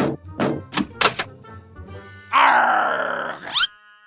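Background music with short voiced grunts of effort, as of cartoon characters pushing. A little past two seconds in comes a louder, drawn-out sound effect that ends in a quick rising glide.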